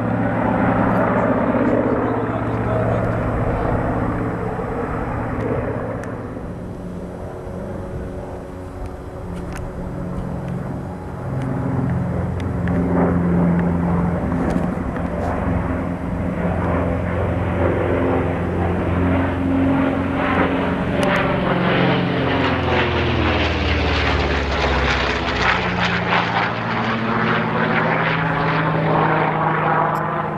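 Piston-engined Corsair fighters flying overhead in formation: a steady radial-engine propeller drone that eases off a few seconds in and swells again from about ten seconds in. Past the middle the sound sweeps down and back up with a swishing, phasing quality as the planes pass.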